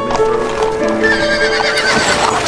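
A horse whinnies with a wavering cry in the second half, and its hooves clip-clop, over background orchestral music with long held notes.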